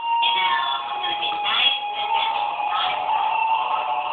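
Experimental electronic noise music played live on synthesizer and effects gear: a steady held drone with warbling, shifting electronic tones over it, continuing without a break.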